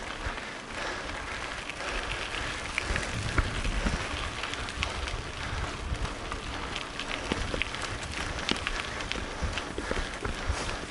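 Mountain-bike tyres rolling over a loose gravel track: a continuous crunching hiss peppered with small stone clicks and pings, over a low, uneven rumble.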